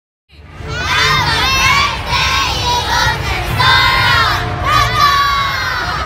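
A group of young girls shouting and cheering together, loud and continuous, starting suddenly a moment in: a team celebrating a win.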